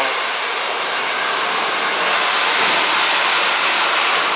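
Handheld hair dryer running, a steady rush of blown air, as it blow-dries curly hair to stretch out the curl pattern.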